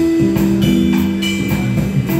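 Live instrumental jazz trio playing: a hollow-body archtop electric guitar holds melody notes over electric bass and a drum kit. The cymbals keep an even pulse of about three strokes a second.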